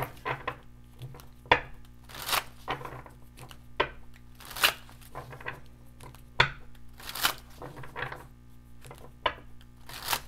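A tarot deck being shuffled by hand: irregular taps and slaps of cards, with a longer swish of cards sliding against each other about every two and a half seconds.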